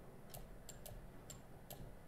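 Faint, sharp clicks, about six at uneven spacing, as digits are handwritten on screen with a digital pen tool.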